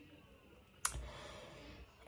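A single sharp click a little under a second in, against quiet room tone.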